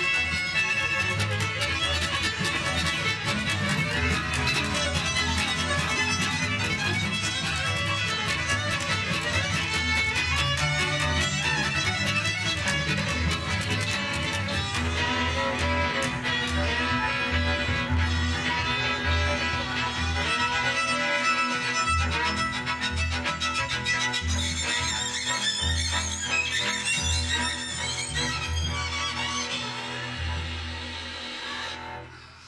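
Live acoustic string ensemble of two violins, viola and cello, with upright bass, mandolin and acoustic guitar, playing a tune together. The bowed strings carry the melody over steady bass notes, and the music gets a little quieter near the end.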